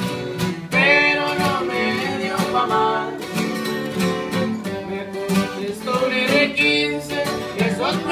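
Sierreño acoustic guitars playing an instrumental passage: a requinto picking quick melodic runs over a strummed twelve-string guitar.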